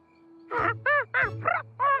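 Cartoon penguin character answering in mock penguin talk: about six short squawking calls in quick succession, each rising then falling in pitch, beginning about half a second in.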